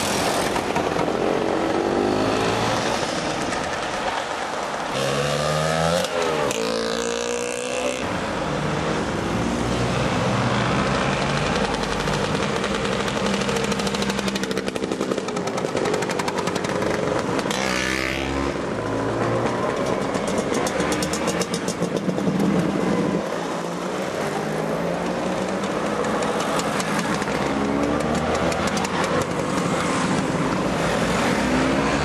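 A string of Lambretta and Vespa scooters riding past one after another, engines revving up as they accelerate, with the pitch dropping sharply as one passes close by, twice.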